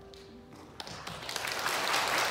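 The last held chord of a grand piano dies away, and a little under a second in an audience starts applauding, the clapping growing steadily louder.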